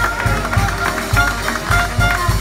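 Live traditional New Orleans jazz quartet playing: cornet and clarinet lines over piano and drums, with a steady beat of about four pulses a second.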